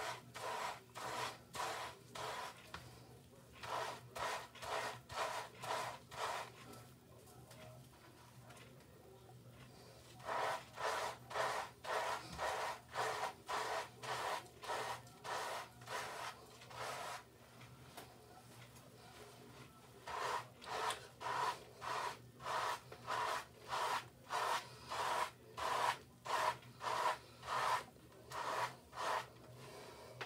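Wave brush bristles stroking through shampoo-lathered short hair, a rhythmic rubbing at about two strokes a second. The brushing comes in three runs with two short pauses between them.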